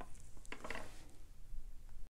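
Soft handling sounds of a paintbrush being laid down across a metal watercolour palette: a click at the start, then a brief clatter about half a second in.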